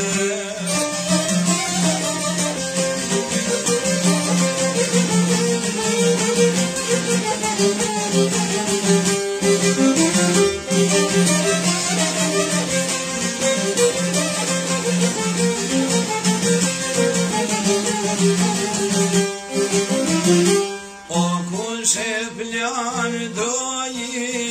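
Albanian folk music: an instrumental passage led by plucked string instruments over a steady low drone, with a short break about 21 seconds in.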